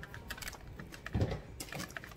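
Small plastic fork clicking and scraping in a baked potato in a plastic takeout bowl: a run of light, irregular ticks with a soft thump about a second in.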